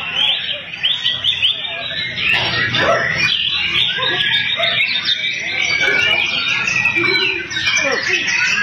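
Many caged songbirds singing at once, a dense, unbroken tangle of overlapping whistles and chattering calls, with people's voices underneath.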